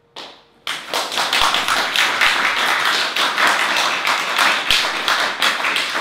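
An audience bursts into loud, dense applause a little under a second in, after a brief sound that fades quickly.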